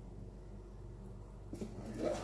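Quiet pause with a steady low hum, then about one and a half seconds in a faint rustle of the iPhone X's cardboard box as its lid is set aside.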